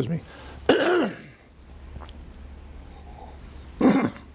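A man clearing his throat about a second in, then again briefly near the end.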